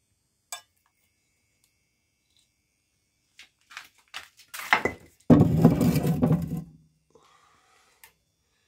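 Cast-iron skillet being slid into a brick oven: a light knock near the start, a few clattering knocks from about three and a half seconds, then a loud grating scrape of iron on brick lasting over a second as the pan is pushed onto the oven floor.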